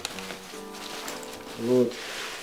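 Open strings of a six-string guitar ringing together, set sounding as the instrument is drawn out of its soft gig bag, and slowly dying away. A short vocal sound comes near the end.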